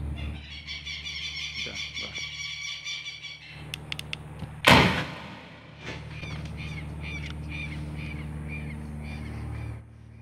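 Model rocket's parachute ejection charge firing once with a sharp bang about halfway through, throwing out the parachute. Birds chirp in quick repeated notes before and after it, over a steady low rumble.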